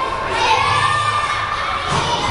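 A group of children shouting and chattering at once, with one high voice drawn out in a rising-and-falling call about half a second in.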